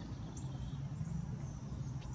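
Steady low outdoor background rumble with a faint low hum, and no distinct event.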